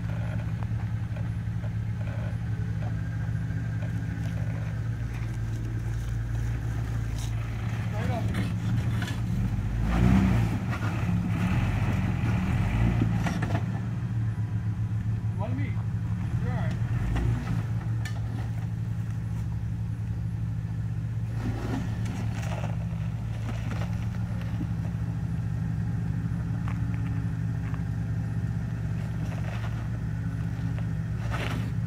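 Jeep engine idling steadily while the Jeep sits on rocks, with a burst of throttle about ten seconds in that holds for a few seconds, and another brief one a little later.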